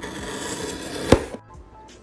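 Small plastic safety box cutter drawn along a cardboard box, slitting the packing tape: a scraping cut that lasts about a second and a half, with one sharp click near its end.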